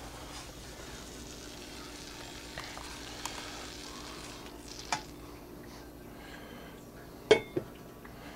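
Homemade HHO (oxyhydrogen) generator and nine-tip burner running at about 90 watts: a faint steady hiss over a low steady hum. One sharp click comes about five seconds in and two more close together near the end.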